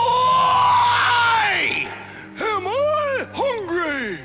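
A cartoon bear's voice wailing in despair: one long held howl that sags and falls away, then a run of short wavering sobbing cries. Soft orchestral music plays underneath.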